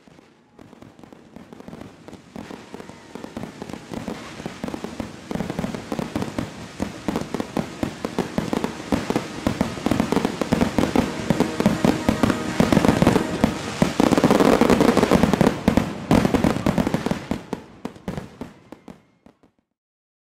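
A fireworks display: a dense run of rapid bangs and crackles. It fades in, is loudest about two-thirds to three-quarters of the way through, and fades out just before the end.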